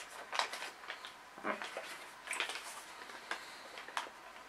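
Scissors snipping open a small plastic snack packet, with short crinkles of the packaging between the cuts, a handful of faint, sharp crackles spread over a few seconds.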